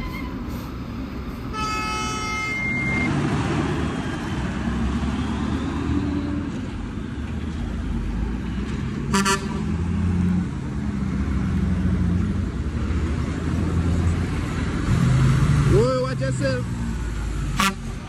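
Heavy diesel trucks rumbling as they work through a tight bend, the low engine sound swelling as a truck draws close. A horn sounds for about a second near the start, and a second, short toot comes about nine seconds in.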